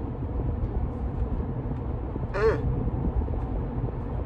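Steady low rumble of a car cabin, with one brief wavering vocal sound from the man a little past halfway.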